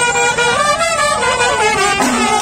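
Brass kombu horns of a Kerala temple procession ensemble blowing several overlapping notes that bend up and then down in pitch.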